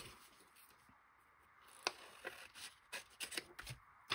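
Paper being handled at a craft desk: faint for about two seconds, then a handful of short sharp clicks and light rustles of paper.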